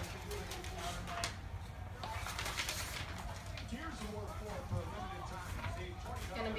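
Paper rustling and crinkling as sheets are pulled out of a gift envelope, in a few short bursts, under faint low voices.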